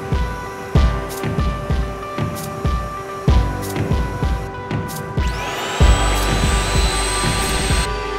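Background music with a steady beat. About five seconds in, a whine rises quickly and settles into a steady high whine over a low hum, cutting off suddenly at the end: the ShopSabre F4 vacuum pump spinning up to hold the sheet down on the table.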